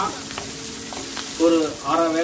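Chopped shallots, spring onion and green chillies sizzling in oil in a black kadai, stirred with a wooden spatula that clicks faintly against the pan. A voice starts talking over it near the end.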